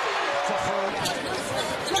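Arena sound from a live NBA basketball game: crowd noise with a basketball bouncing on the hardwood court.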